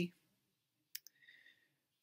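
The tail of a spoken word, then near silence broken by a single short click about a second in, followed by a faint breath before speech resumes.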